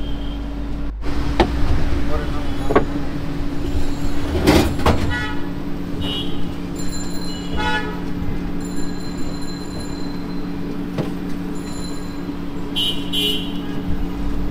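Street traffic with short vehicle horn toots and background voices over a steady low hum, with one sharp, loud sound about four and a half seconds in.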